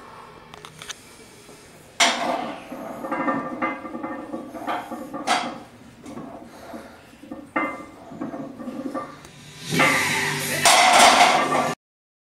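Loaded barbell knocking in the steel hooks of a bench-press rack: a sharp clank about two seconds in as it is unracked, scattered knocks during the reps, and a loud metal clatter near the end as it is racked again, cutting off suddenly.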